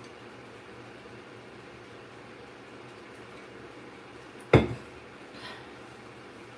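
A metal drinking tumbler set down hard on a surface about four and a half seconds in, one sharp knock with a brief ring, followed by a faint clink about a second later, over a low steady background hum.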